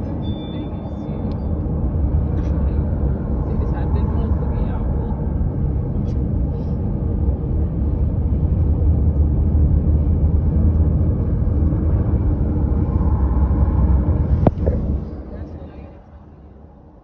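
Road and wind noise of a moving car, a loud steady low rumble. Near the end there is a sharp click, and then the rumble drops away.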